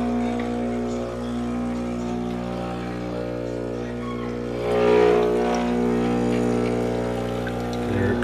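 A Breville espresso machine's pump running with a steady hum as a shot of espresso is pulled into a small mug. The sound grows louder and rougher about five seconds in.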